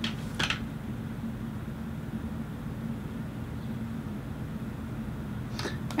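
A steady low mechanical hum of the room, like a fan or appliance running, with two brief soft rushes of noise, one just after the start and one just before the end.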